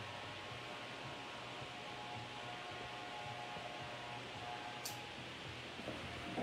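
Corded electric hair clipper running with a steady, quiet hum. A short sharp tick sounds about five seconds in.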